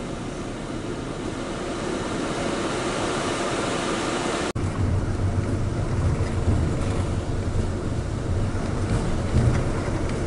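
Steady road and engine noise inside a moving vehicle. About four and a half seconds in there is a sudden short break, after which a deeper rumble is louder.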